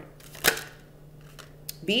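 An angel oracle card being drawn from the deck: one sharp snap about half a second in, then a fainter click shortly before the next word.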